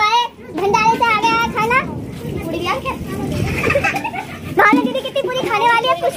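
High-pitched voices of children and women talking and calling out, with a stretch of rough, noisy sound between them in the middle.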